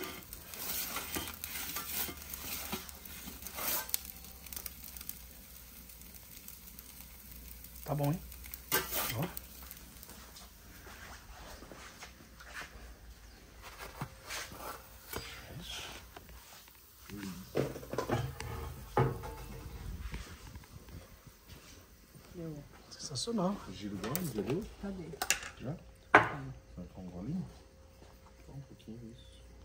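Scattered light clinks, knocks and scrapes of dishes, cutlery and a metal pizza peel over a faint steady hiss, with quiet voices in the background in the second half.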